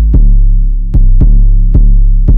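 Programmed 808 bass in an Amapiano beat playing deep sustained notes. Each of the four hits starts with a sharp click and a quick drop in pitch.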